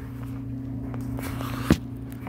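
Handling noise from a phone being moved about while filming: a rubbing, rustling stretch about a second in that ends in a single sharp knock, over a steady low hum.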